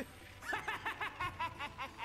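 A person snickering: a quick run of short, high-pitched laughs, about seven a second, starting about half a second in.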